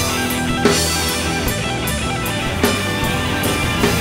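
Live rock band playing an instrumental passage, with no vocals: electric guitar over a drum kit, with a few loud drum accents standing out.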